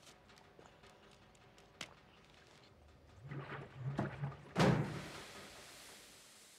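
Faint small clicks and handling sounds, then a few seconds of low, uneven rumbling and a heavy thunk about four and a half seconds in, followed by a steady hiss.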